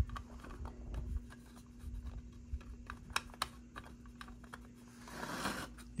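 Quiet, irregular light clicks and taps of hard plastic model parts being handled, as a kit car's roof is pressed onto its body, over a faint steady hum.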